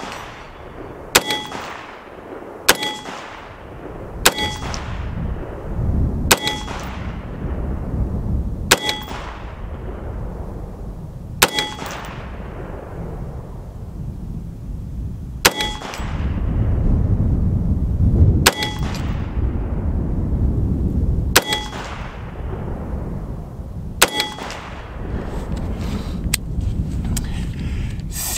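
CMMG Banshee 5.7x28mm AR pistol with a 5-inch barrel firing about ten single semi-automatic shots, one every two to three seconds. Most shots are followed by a short metallic ring from a steel target being hit. Wind rumbles on the microphone throughout, strongest in the middle.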